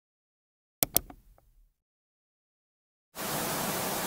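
Two sharp clicks in quick succession about a second in, with a short fading ring. Then, from about three seconds in, a steady hiss of TV static, as a VHS-style sound effect.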